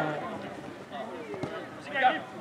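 Faint voices of players calling across an outdoor football pitch, with a single soft knock about three-quarters of the way through.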